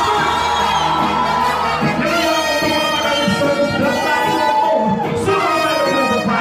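Live reggae band playing, with a trumpet and trombone horn section carrying the melody.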